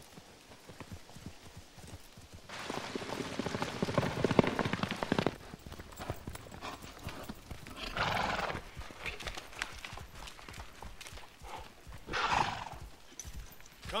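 A horse's hooves clopping at a walk, with a long, loud whinny about three seconds in and two shorter horse calls near the eight- and twelve-second marks.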